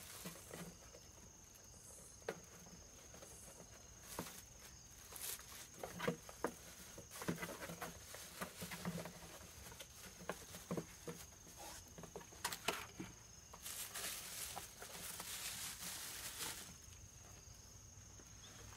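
Plastic bag rustling and crinkling as a parcel is unwrapped by hand, with small clicks and taps from handling a box; the busiest rustling comes a few seconds before the end. A steady high insect tone runs underneath.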